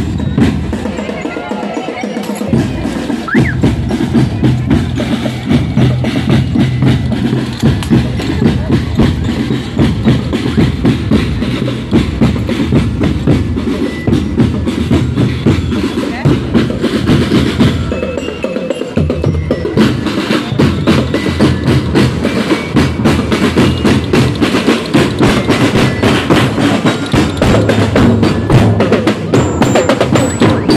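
Marching drum band of bass drums and snare drums playing a fast, steady beat. The bass drums drop out briefly twice, about two seconds in and again a little past halfway.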